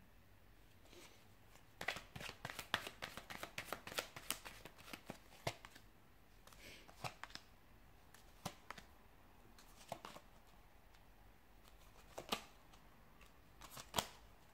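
Tarot cards being handled on a hard tabletop, faint: a quick run of crisp flicks and taps a couple of seconds in as the deck is worked through, then single taps every second or two as cards are laid down.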